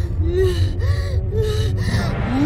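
A cartoon girl's angry, heavy huffing breaths, about two a second, each with a short rising-and-falling voiced grunt, over a deep low rumble.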